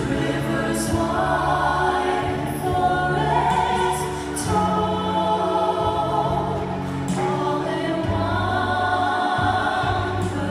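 A group of voices singing a slow anthem-like song together over an instrumental backing, in long held notes.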